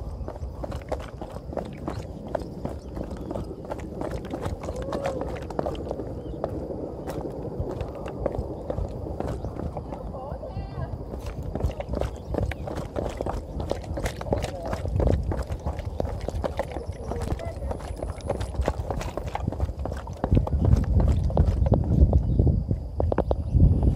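Quick footsteps on a concrete hill path, an uneven run of short footfalls, over a low rumble that grows louder near the end.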